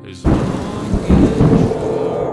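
Sound effect: a sudden loud crash about a quarter second in, followed by a deep rolling rumble that is loudest just past the middle.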